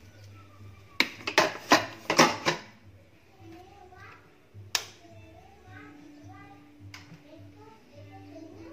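A quick run of sharp clicks and knocks as a metal rice-cooker inner pot is handled and set into the cooker, then two more single knocks.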